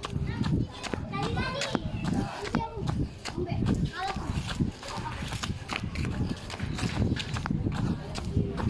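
Handling noise from a phone carried against a walking person's clothing: fabric rubbing and scraping over the microphone, with irregular low thumps from the steps and many quick clicks.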